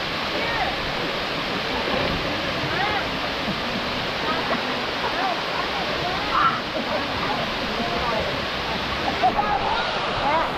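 Steady rush of a waterfall pouring into a pool, with people's voices and children's chatter over it.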